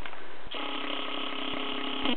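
Camcorder zoom motor whining steadily as the lens zooms in, starting about half a second in and stopping at the end.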